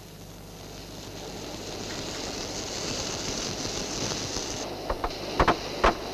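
Steady construction-site noise with a high hiss, which cuts off abruptly near the end. Then several sharp hammer blows on steel follow in quick succession.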